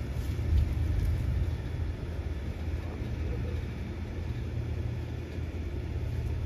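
Steady low outdoor rumble, with a few faint crackles of dry leaf litter near the start as a nine-banded armadillo roots through it.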